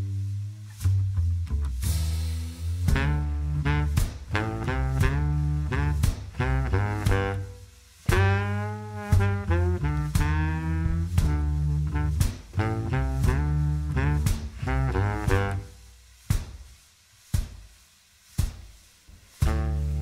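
Instrumental band music with a bass line, drums and a horn line. Near the end it breaks into short hits separated by silences.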